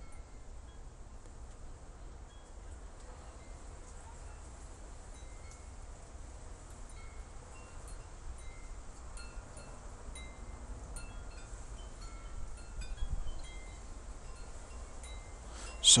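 Faint, scattered high ringing tones, a few notes at a time like small chimes, over a low steady hum. There is a soft low bump about thirteen seconds in.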